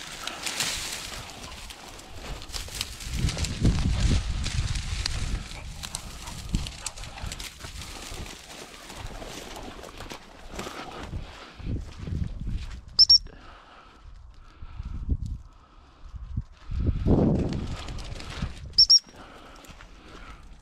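Gundog whistle blown twice as a short two-pip turn command, the two sharp high peeps coming about six seconds apart in the second half. Around them, footsteps and rustling of someone walking through rough, dry grass and weeds.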